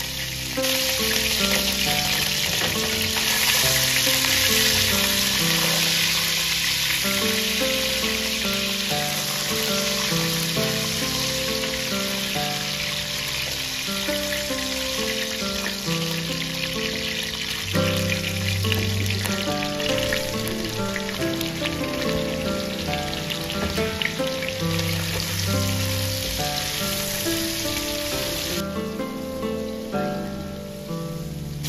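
Pieces of mutton fat and cumin seeds sizzling in hot oil in a pot, a steady crackling hiss that falls away near the end. Background music plays throughout.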